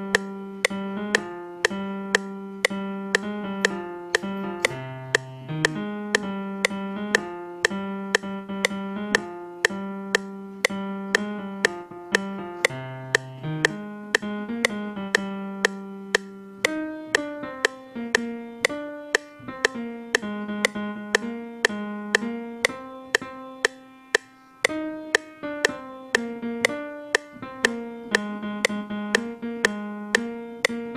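A software-instrument melody played on a MIDI keyboard, one note line with a few lower notes, over a sharp click on every beat about twice a second, matching the 120 BPM tempo.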